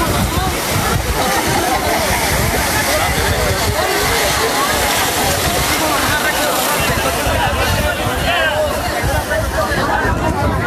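A large crowd, many voices shouting and talking over one another at once, with a constant rushing noise underneath.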